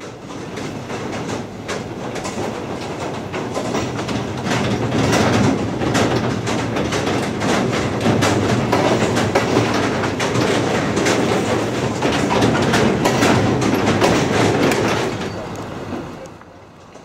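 Double-deck car-transport train wagons rattling and clacking in a continuous clatter. The noise swells over the first few seconds, stays loud through the middle and fades near the end.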